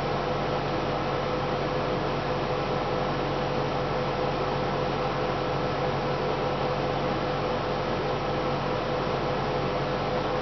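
Steady background hiss with a low hum and a faint steady tone under it, unchanging throughout.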